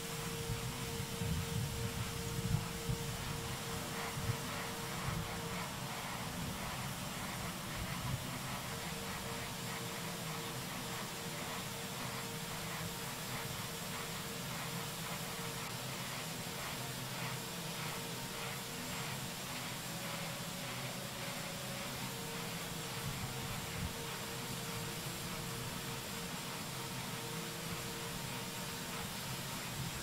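Steady hiss of venting gas around the space shuttle's main engines on the launch pad, with a faint steady tone underneath that drops out a few times.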